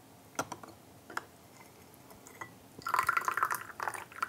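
Brewed tea trickling and dripping from a leaf infuser lifted out of a glass brewer, loudest for about a second near the end, after a few light clicks of the infuser against the glass.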